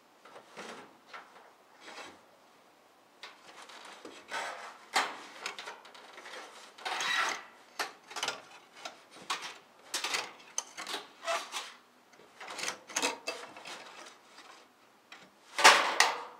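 A wire coat hanger scraping, rubbing and knocking against the top edge of a wooden garage door and the 1x4 board screwed along it, worked in from outside in an attempt to hook the opener's emergency release. The strokes are irregular and start about half a second in, then grow louder from about four seconds in.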